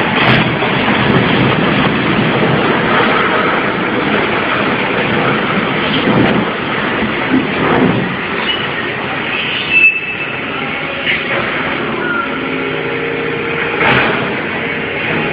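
Continuous heavy rumbling crash of a multi-storey concrete building collapsing as it is pulled down, with a brief sharp crack about ten seconds in.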